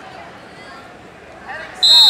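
Match-clock buzzer sounding near the end, one loud, steady, high-pitched tone: the wrestling period has run out. Voices murmur in the gym before it.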